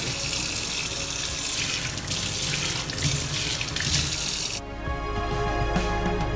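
Tap water running from a kitchen faucet over a hand into a stainless steel sink, a steady splashing hiss that cuts off suddenly about four and a half seconds in.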